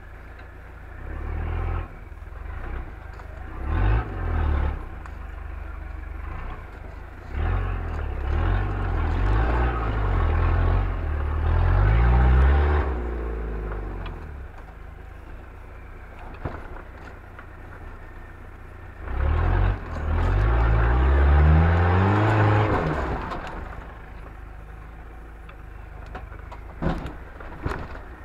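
Off-road vehicle's engine revving in bursts while crawling up a rocky obstacle. It gives short blips early and two long revs that climb in pitch, one in the middle and one about three quarters of the way through.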